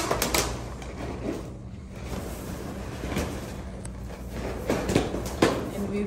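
Latex balloons being handled and pressed together as clusters are worked into a garland: rubbing and knocking sounds, with a few sharper knocks in the second half, the loudest about five and a half seconds in.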